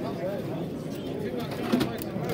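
Domestic pigeon cooing over a background of people talking in a busy show hall, with a louder low sound near the end.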